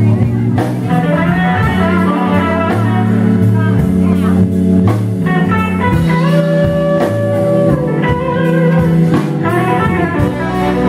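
Live blues band playing a slow blues: an electric guitar lead with bent notes over bass and drums. About six seconds in, one note is held for over a second.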